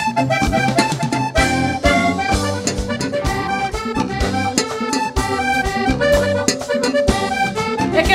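Live vallenato band playing an instrumental passage led by a diatonic button accordion, running melody lines over electric bass and steady drum and hand-drum beats.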